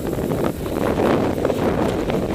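Wind rushing and buffeting over the camera microphone during paragliding flight, a steady noisy roar that grows a little louder partway through.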